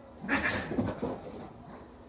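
A cat letting out one short cry, about a second long, while grappling with a dog.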